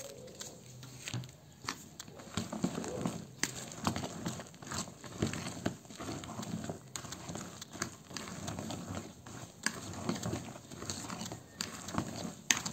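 Hands mixing chopped green beans into beaten egg batter in a plastic bowl: irregular wet squishing with many small clicks.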